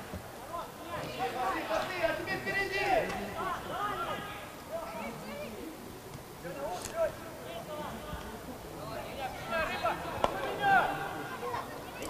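Faint, scattered shouts and calls of football players on the pitch.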